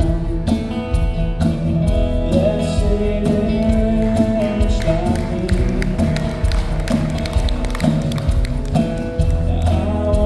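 Live acoustic band: two acoustic guitars strummed in a steady rhythm under a sustained lead melody.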